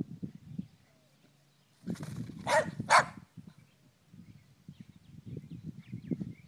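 Two short, loud animal calls about half a second apart, over low rustling and footfalls on the ground.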